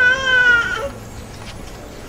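A man's voice holding one long, high, even note, the drawn-out end of a word, which fades out just under a second in. A pause with faint background follows.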